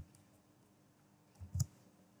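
Faint clicks of computer keyboard keys: one right at the start and a short pair about one and a half seconds in, as an opening bracket is typed.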